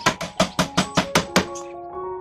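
Hammer nailing a wooden frame joint: rapid, even blows, about five a second, that stop about one and a half seconds in, with background piano music running under and after them.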